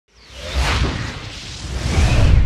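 Whoosh sound effect of an animated logo intro, with a deep rumble underneath. It swells to its loudest about half a second in, falls away, then builds again near the end.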